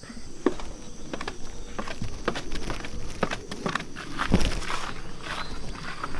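Footsteps walking off a wooden porch, a run of irregular knocks with a heavier thump about four and a half seconds in. A steady high insect drone, crickets, runs behind them.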